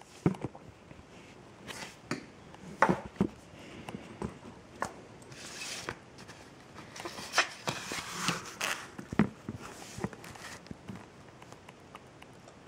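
Handling noise from a small plastic trail camera: about a dozen irregular clicks and knocks, with a few short bursts of rustling.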